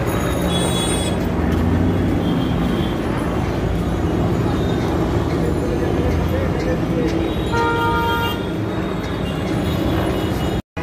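Busy street traffic: a steady rumble of engines and passing voices, with a vehicle horn honking for under a second about eight seconds in and a brief high-pitched ring about half a second in.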